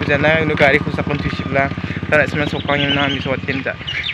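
A man talking to the camera, continuous speech.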